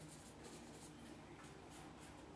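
Faint scratchy strokes of a watercolour brush dragged across paper, over a low steady room hum.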